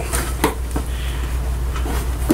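Old hard-shell guitar case being opened: a few clicks and knocks, the sharpest about half a second in, as the lid comes up, over a steady low hum.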